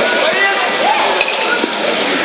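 Several voices shouting over one another during an armoured melee, with a couple of sharp knocks of weapons striking plate armour about a second in and again shortly after.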